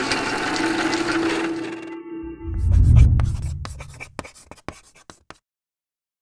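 Animated-logo sound effects: a noisy swish with a held tone, a deep boom about three seconds in, then a run of ticks that thin out and stop a little past five seconds.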